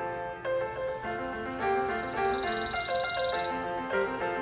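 A bird's rapid, high trill held for about two seconds, starting about a second and a half in and falling slightly in pitch, over background piano music.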